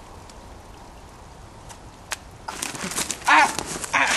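A person dropping onto a forest floor of dry twigs and leaves: crunching and thumps start about two and a half seconds in. A loud wavering yell comes about three seconds in, and another burst of crunching follows near the end.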